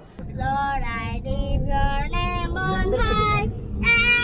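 A high, child-like voice singing in short phrases, ending on held notes, over the steady low rumble of a car cabin on the move.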